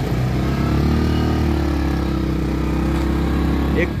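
Motorcycle engine running steadily under way, close up from on the bike, its note holding an even pitch.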